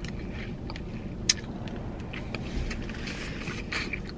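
Mouth sounds of a person sucking the juice out of a cracked boiled peanut and chewing, with small clicks and scrapes of the soft, wet shell in her fingers and one sharp click about a second in, over a steady low cabin hum.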